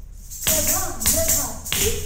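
A Kathak rhythm phrase: three sharp jingling strokes, about half a second apart at first, each joined by short rhythmic syllables.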